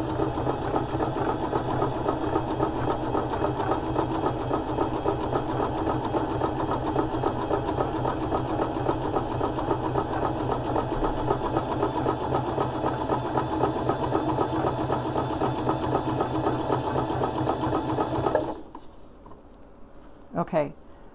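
Electric sewing machine running steadily at speed, stitching a dense appliqué stitch at a stitch length close to zero. It stops abruptly about a second and a half before the end.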